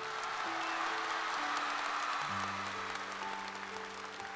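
Audience and coaches applauding over the song's soft instrumental accompaniment, whose sustained notes change every second or so. The clapping swells early and fades gradually towards the end.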